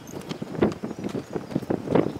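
Hooves of a Friesian mare and her young pinto foal trotting on packed dirt: a quick, uneven run of hoofbeats.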